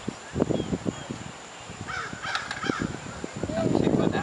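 A harsh bird call about two seconds in, over soft voices.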